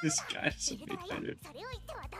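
Anime dialogue in Japanese: high-pitched character voices speaking with sharp rises and falls in pitch.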